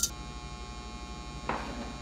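Steady electrical mains hum with a high buzzing whine that comes in with a sharp click at the very start. A short crackle of noise follows about one and a half seconds in.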